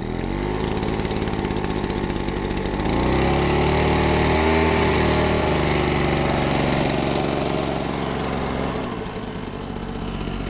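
Wild Badger WB52CC backpack blower's two-stroke engine running just after catching on the third pull of its first start on fresh fuel. It speeds up about three seconds in, dips briefly, runs steadily, then settles lower near the end.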